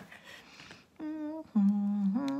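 A woman humming to herself while reading a label, two held notes starting about halfway in, the second lower and louder.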